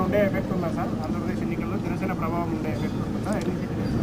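Speech: a man talking in short phrases over a steady low background rumble.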